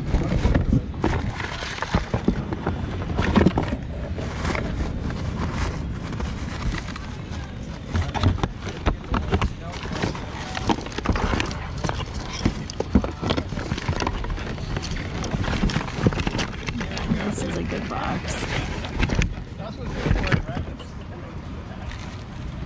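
Indistinct voices talking in the background while items are rummaged in a cardboard box, with small knocks, taps and rustles of boxes and plastic bags against the cardboard.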